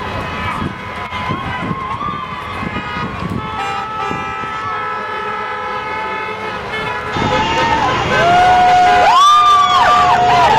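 Car horns honking in support of a street-corner crowd of protesters, one horn held for several seconds, over a babble of voices. The sound gets louder near the end, with more horn blasts and shouts.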